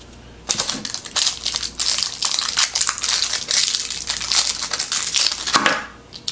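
Plastic crinkling and crackling as it is handled by hand, dense and continuous, with scattered small clicks. It starts about half a second in and stops just before the end.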